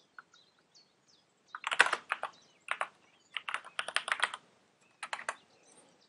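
Typing on a computer keyboard: several quick runs of keystrokes with short pauses between them, starting about a second and a half in.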